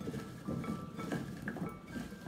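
Hands tossing oiled delicata squash slices in a glass bowl: soft, irregular shuffling of the pieces with small clicks against the glass.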